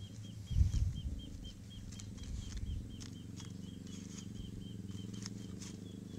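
A small animal chirping steadily, short high chirps about four a second, over a low steady hum. A dull thump about half a second in is the loudest sound, and light clicks and rustles come from coconut palm leaflets being handled.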